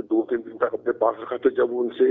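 A man talking in Urdu over a phone line, the sound thin and cut off above the voice range; nothing else is heard.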